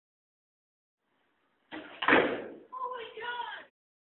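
Silence, then a short network logo sting: a sudden slam-like hit about two seconds in, followed by a brief voice before it cuts off near the end.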